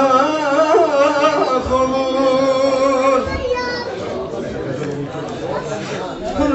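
A man singing a Turkish folk song (türkü) in long, ornamented phrases, his voice wavering through quick turns and then holding one long steady note. After about three seconds the singing drops back and goes quieter.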